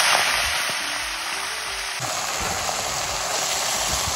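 Leafy greens dropped into hot oil in a blackened wok: a loud burst of sizzling as they land, settling into steady frying.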